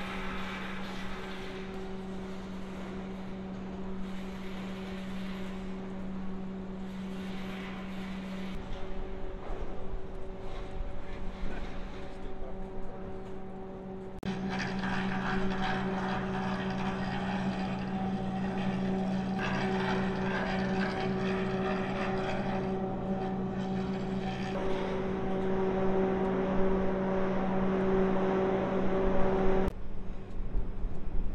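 Steady industrial machinery drone: a low hum with overtones over a wash of mechanical noise. The sound changes abruptly about nine seconds in and again about fourteen seconds in, and is louder after the second change.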